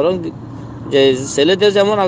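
A man speaking, pausing briefly just after the start before talking on.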